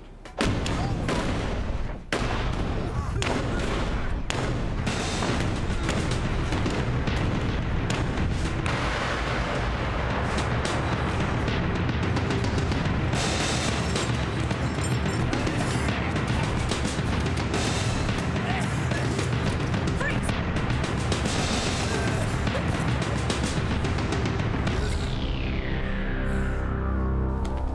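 Action-scene soundtrack: a music score mixed with gunfire and booms from an armed assault. It bursts in loudly just after a brief hush and runs dense and continuous.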